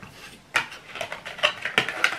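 Handling noise: a run of rustles and small clicks as things are picked up and moved about by hand, starting about half a second in.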